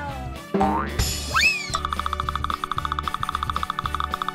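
Background music with cartoon sound effects: a springy boing made of quick rising pitch glides about a second in, then a rapid, fluttering run of repeated high tones over a steady bass line.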